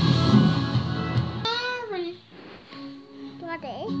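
Music with singing, changing abruptly about a second and a half in to a quieter passage with a voice sliding up and down over steady held notes.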